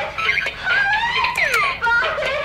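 Bop It electronic toy playing its sound effects as it is worked: a quick run of electronic tones that slide up and down in pitch, several in two seconds.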